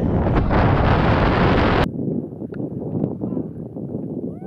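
Wind buffeting the microphone of a camera carried by a skier on a fast powder run, with the skis hissing through the snow. The rush is loud and cuts off suddenly just under two seconds in, leaving a quieter, lower rustle.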